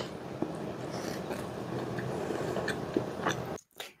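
A person biting into and chewing a burger, close to the microphone, with small wet mouth clicks; the sound drops out briefly near the end.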